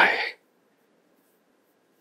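A man's spoken line ends about a third of a second in, followed by near silence with only faint room tone.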